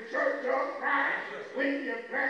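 Only speech: a man preaching into a microphone in short, emphatic phrases.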